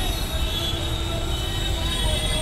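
Busy city street ambience: a steady traffic rumble with a steady high-pitched whine over it.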